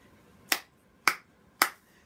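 Three sharp finger snaps, evenly spaced about half a second apart.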